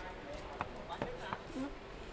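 A few faint, light knocks and taps spaced unevenly, with faint voices in the background.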